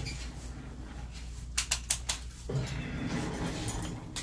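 A quick run of about four sharp clicks about one and a half seconds in: power switches on the back of a 500-series rack and a Maag EQ being flipped on, over a low steady hum of the powered gear and some rustling of movement.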